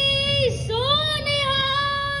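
A child's high voice singing through a microphone: a long held note, a short break about half a second in, then another long note that slides up into pitch and is held.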